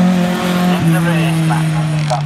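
Autograss racing car's engine running hard at steady high revs as the car passes. The note steps down in pitch about a second in.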